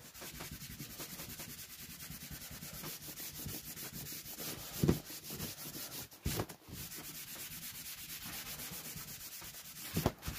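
A gloved hand sanding a sheet of MDF by hand, rubbing in quick, even back-and-forth strokes, with two brief knocks about halfway through.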